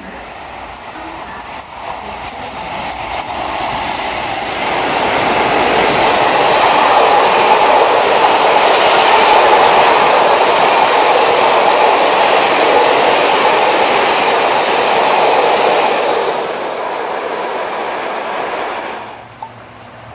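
Diesel-hauled charter train of Pullman coaches passing at speed: the noise builds over the first few seconds as the train approaches, then holds loud and steady as the coaches' wheels roll past on the rails. It eases off and then cuts off abruptly near the end.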